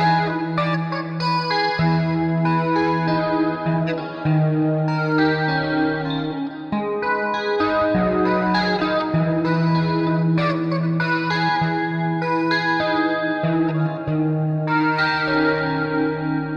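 Instrumental passage of a slow rock ballad: an electric guitar with chorus and echo effects plays over sustained low bass notes, the chords changing every couple of seconds, with no vocals.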